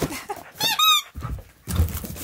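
A dog's squeaky toy squeaking several times in quick succession as a husky bites on it, followed by a couple of low thuds.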